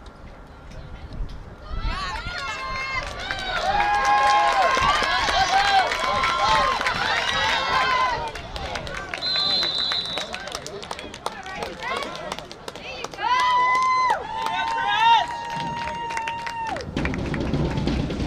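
Several voices shouting and cheering through a football play, with long drawn-out yells. A short, high referee's whistle blast sounds about nine seconds in.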